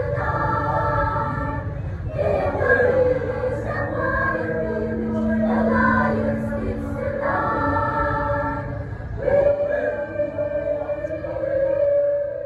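Mixed-voice school choir singing unaccompanied in harmony, holding chords that change every second or two, with a low note sustained beneath the voices through the middle.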